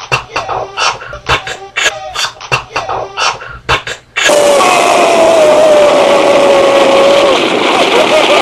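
Beatboxing by mouth into a cupped hand: sharp percussive kick, snare and hi-hat sounds at about two to three a second. About four seconds in it is cut off by a sudden, loud, steady rush of noise with a faint falling tone, an explosion sound effect.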